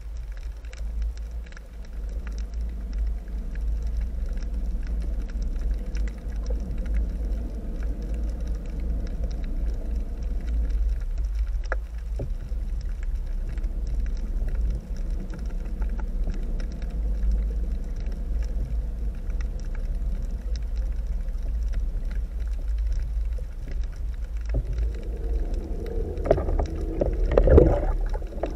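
Low steady rumble of strong tidal current pushing against an underwater GoPro housing. Near the end a louder rough spell of knocking and scraping comes as the camera shifts over the sandy bottom.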